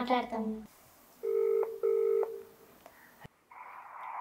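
Telephone ringback tone heard while a call is placed: one double ring, two short pitched beeps with a brief gap between them, the cadence of an Indian ringback tone. A click follows near the end.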